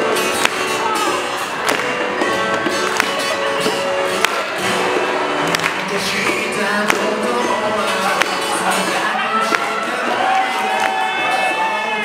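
Live band music: a man singing into a microphone over acoustic guitar and keyboard, with sharp claps or beats recurring about every second and a quarter.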